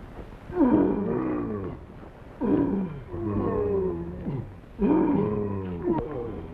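Loud, long cries repeated three times, each falling in pitch.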